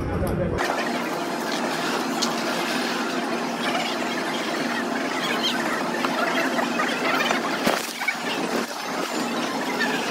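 Casino floor din: a steady babble of voices mixed with electronic slot-machine sounds, with a single sharp click about three-quarters of the way through.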